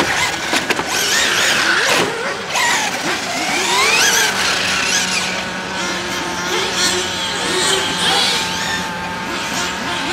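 Electric motor and drivetrain of a 1/8-scale electric on-road RC car whining as it laps the track, the pitch rising and falling again and again with throttle and braking through the corners, over tyre noise on the asphalt.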